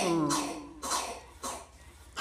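A woman's singing voice in Red Dao folk song ends a held note with a falling glide, then two short breathy sounds come in the pause.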